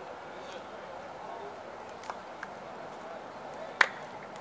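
Faint, indistinct chatter of distant voices, with one sharp click near the end.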